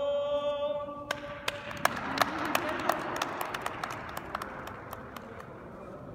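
A man's held chanted note ringing under the mosque's dome, which stops about a second in. Then come scattered hand claps from the people around, each ringing in the dome's echo, thinning out and fading toward the end.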